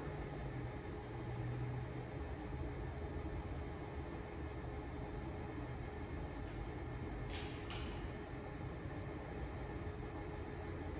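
Quiet room tone with a steady low hum. Two short hissing sounds come close together a little after seven seconds in.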